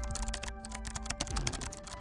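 Rapid computer-keyboard typing clicks over background music with sustained notes.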